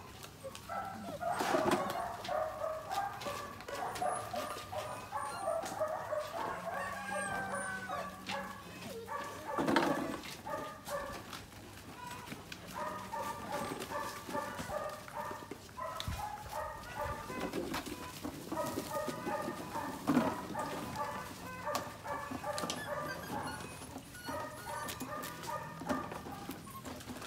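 A group of Belgian Malinois puppies yapping and barking as they play, short high calls coming in repeated bursts, with a few louder barks.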